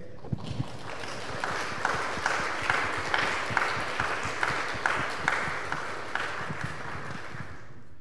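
Congregation applauding, with one person's claps standing out in an even beat of a little over two a second; the applause dies away near the end.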